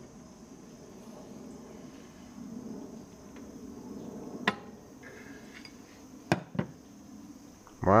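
A few sharp metallic clicks from a steel pry bar shifting the crankshaft of a Kohler engine to check its end play: one about halfway through, then two close together a couple of seconds later.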